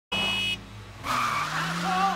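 A car horn blares for about half a second. About a second in, tires screech as a car brakes hard, the squeal wavering and bending in pitch.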